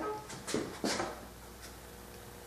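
Two soft knocks about a third of a second apart as a Festool Domino joiner is handled and set against a walnut rail, then faint room tone. The joiner's motor is not running.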